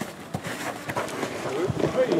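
Scuffing footsteps and a few dull knocks on artificial turf as a player drives into a tackle, then a short laugh near the end.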